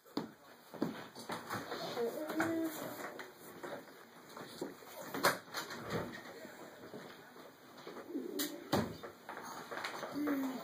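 Quiet, indistinct voices with a couple of short hooting tones, about two seconds in and again near the end, and scattered small clicks and knocks.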